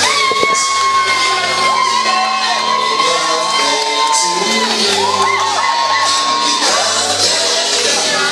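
Loud dance music with a party crowd cheering and shouting over it. A high note is held for about four seconds from the start, then again for about two seconds later on.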